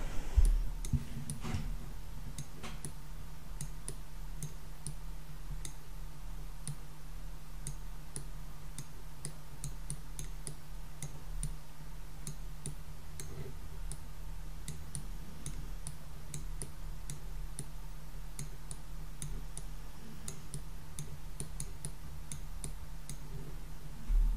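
Light, irregularly spaced clicks of a stylus tapping on a tablet screen as numbers are handwritten, over a low steady hum.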